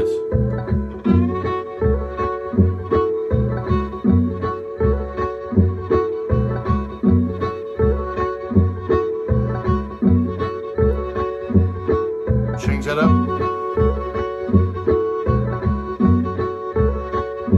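Fiddle improvising blues lines over a backing groove, with a pulsing bass-heavy beat underneath.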